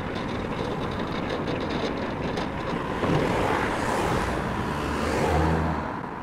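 Street traffic: steady road noise with a vehicle passing, louder in the second half, and a low engine hum near the end.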